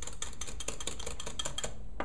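Wire whisk beating a yeast, warm-water and flour mixture in a measuring cup: rapid clicking of the wires against the cup, stopping near the end.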